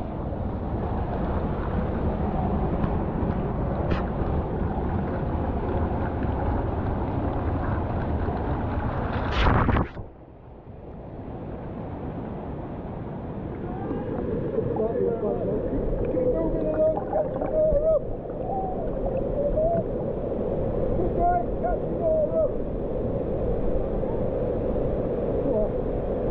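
Waterfall water pouring down onto and around the camera in a dense rush, which cuts off suddenly about ten seconds in. Then comes the steadier rush of a waterfall into a river pool, with wavering voice-like tones over it from about halfway.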